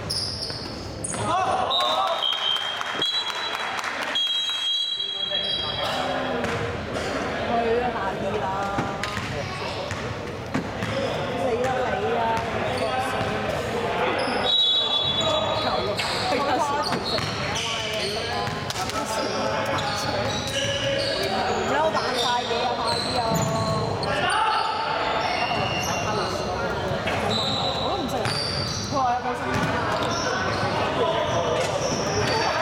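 A basketball bouncing on a hardwood gym floor with players' voices and calls in an echoing sports hall. A few short, high squeaks come through here and there.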